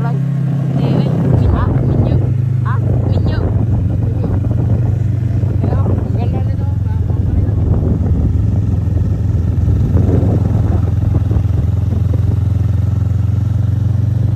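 A motorcycle engine running steadily under way, a low hum whose pitch drops about a second in as the revs ease or the gear changes, then holds level.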